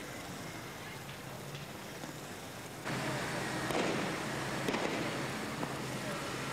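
Gunfire to disperse a crowd: two sharp shots about a second apart, over loud street noise that cuts in abruptly about three seconds in.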